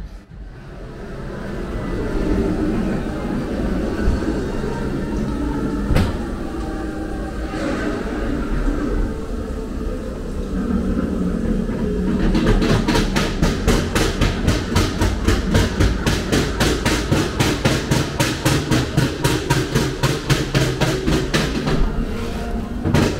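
Ghost train ride car rolling along its track with a low rumble that builds as it starts moving, with a single sharp knock about six seconds in. From about halfway through, a rapid, even clacking of about four to five clicks a second joins the rumble.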